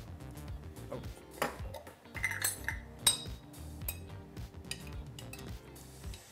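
A metal spoon clinking and knocking against a glass olive jar as olives are scooped out: a scatter of sharp clinks, the loudest about three seconds in. Background music plays throughout.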